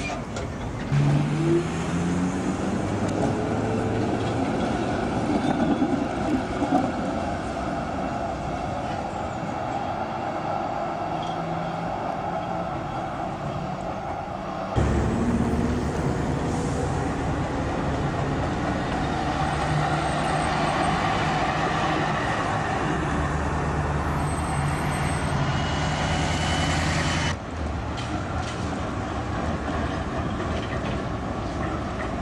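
Street sound of a metre-gauge tramway and road traffic. Near the start comes a rising whine as a tram's motors accelerate it away through a curve; later there is the steady running of road vehicles and trams. The sound changes abruptly twice, where the footage cuts.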